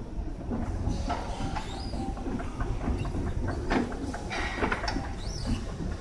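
Escalator running: a steady low rumble with scattered clacks and knocks from the moving steps.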